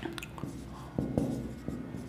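Marker pen writing on a whiteboard: a series of short strokes and taps as a word is written out.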